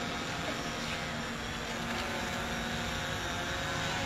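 Steady outdoor background noise with a faint low hum and no sudden sounds.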